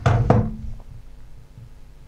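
A couple of quick knocks as a smartphone is set down and handled on a wooden desk, followed by a faint steady hum.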